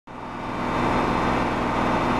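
2006 Dodge Charger's 3.5-litre high-output V6 idling steadily. The sound fades in over the first half second or so.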